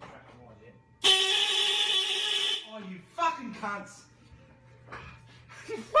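A loud horn blast, like an air horn, starts suddenly about a second in and holds one steady pitch for about a second and a half before cutting off. A man's voice and laughter follow.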